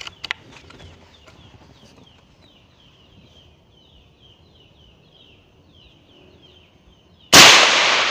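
A single very loud shot from a 4.5 mm PCP air rifle firing a Superdome pellet, coming suddenly about seven seconds in and dying away over about a second. Before it there is only faint, high, rapid chirping.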